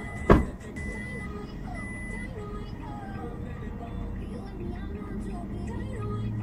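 A car's electronic warning chime beeps in high, roughly half-second tones and stops after about two seconds. A single loud thump comes about a third of a second in. Faint voices and music sit under a low, steady hum.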